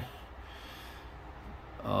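A pause in a man's talking with only a faint low background hum; near the end he starts again with a drawn-out "uh".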